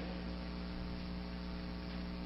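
Steady electrical mains hum with a stack of evenly spaced overtones over a faint hiss: the background noise of the recording's audio chain, heard in a gap in the speech.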